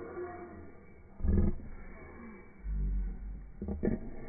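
A person growling at close range to the microphone: a short loud growl about a second in, a low rumble past the middle, and another short growl near the end.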